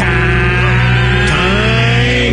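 Loud hard-rock music with distorted electric guitar; held notes bend upward in pitch about halfway through.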